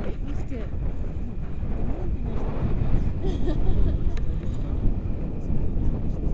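Airflow buffeting the microphone of a camera on a paraglider in flight, a steady low rumble, with faint voices under it.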